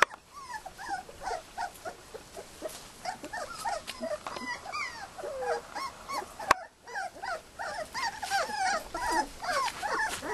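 Australian kelpie puppies whimpering and yelping: many short, high cries that rise and fall, overlapping one another. A single sharp click comes about six and a half seconds in.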